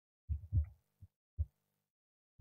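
Dull low thumps of a handheld microphone being handled and raised to the mouth: four short bumps within the first second and a half, the first two close together.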